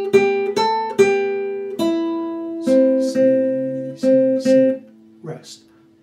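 Nylon-string classical guitar played slowly as a single-line melody: a short phrase of plucked notes, then four repeated C notes, the answering phrase of a call-and-response tune.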